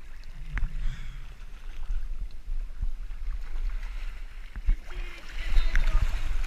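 Pool water lapping and sloshing against a waterproof action-camera housing at the surface: a steady low rumble with a few short knocks. Splashing grows louder near the end.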